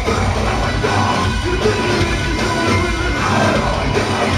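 Deathcore band playing live at full volume: heavily distorted guitars over a fast, dense drum beat, with shouted vocals, heard from within the audience.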